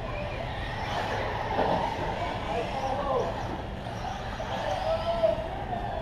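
Indistinct voices talking in the background over a steady, engine-like drone.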